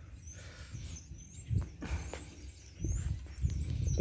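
Low thumps and rumble from a handheld camera being moved and handled, with faint bird chirps in the background.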